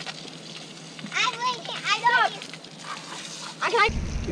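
Children's high voices calling out in short bursts over a faint hiss of water spraying from a garden hose.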